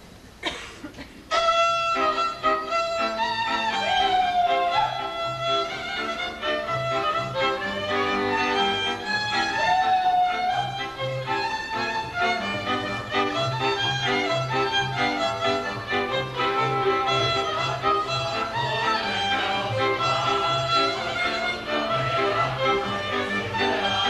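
A folk string band starts a dance tune about a second in, with fiddles playing the melody over a steady pulsing accompaniment of chords and double bass.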